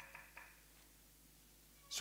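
A few faint, short pitched blips in the first half second, like a laptop's volume-change feedback sound, then near silence with room tone.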